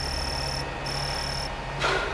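Low steady electronic drone under a faint hiss, with a high thin tone pulsing on and off about once a second. A short breath-like vocal sound comes near the end.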